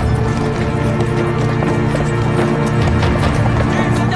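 Horse hooves clip-clopping steadily, several strikes a second, over background music with long held low notes.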